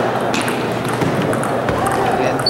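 Table tennis rally: a celluloid-type ball struck by rubber-faced paddles and bouncing on the table, a few sharp clicks over a steady murmur of spectators in a hall.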